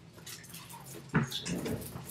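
Rustling and light clinking of a tangled string of Christmas mini-lights being shaken and handled, with one sharper knock a little past one second in.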